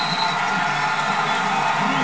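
Stadium crowd cheering and making noise, heard through a television's speaker.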